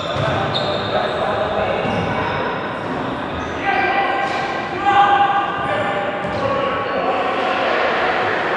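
Futsal players' voices calling out across an echoing indoor sports hall, loudest a little past the middle, with occasional knocks of the ball on the court floor.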